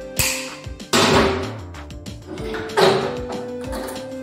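Background music, cut through by three sharp noisy clatters of steel tools on a bench vise as pliers work the pin of a hinge clamped in its jaws; the second, about a second in, is the loudest and longest.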